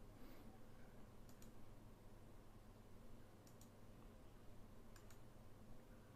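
Faint computer mouse clicks over near-silent room tone: three clicks about two seconds apart, each a quick double tick of press and release.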